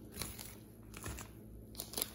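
Clear plastic bag around a wax melt brittle bar crinkling faintly as the bar is handled and set down on a countertop, with a few light clicks, the sharpest near the end.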